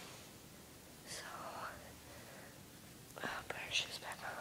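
A person whispering quietly, in two short bursts: one about a second in and a louder one near the end.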